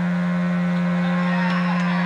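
Amplified electric guitar holding one steady droning note through the amps, ringing out unchanged at the end of the song.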